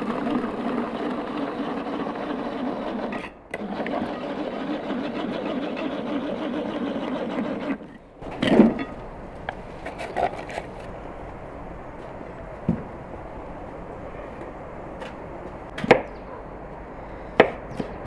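Pull-cord manual food chopper whirring as its cord is pulled again and again, mincing onion cores, in two runs of about three and four seconds. About eight and a half seconds in comes a single knock as the minced onion goes into the bowl, then a few knife taps on a wooden cutting board near the end.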